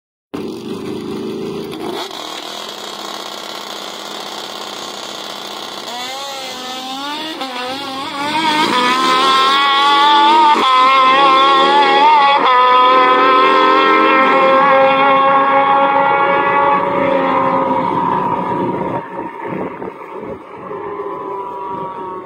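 Drag racing motorcycle engines: idling on the line, revs wavering for a couple of seconds, then a hard launch about 8 s in. Wide-open acceleration follows with a couple of abrupt gear-shift steps in pitch, fading away down the strip over the last few seconds.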